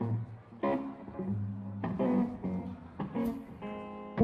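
Electric guitars playing a few sparse chords and single notes, each left to ring, with low notes underneath.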